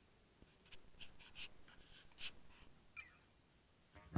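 Near silence: room tone with a few faint, short rustles and clicks in the first half, and a brief faint squeak about three seconds in.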